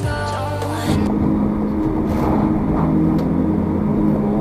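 Music, then about a second in the sound switches abruptly to car cabin noise: engine and road noise while driving, with steady music-like tones still running underneath.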